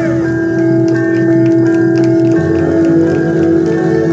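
Bulgarian folk dance music playing loudly: a melody over a steady held drone, with drum strokes.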